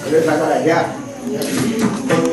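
Voices in a crowded room, with small brass hand cymbals (taal) beginning to clink near the end.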